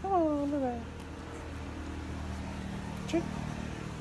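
A rooster crowing, the last falling syllable of its crow ending about a second in; after that only a low steady background hum with a brief click.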